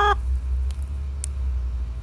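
A steady low rumble, with two faint clicks a little over half a second apart.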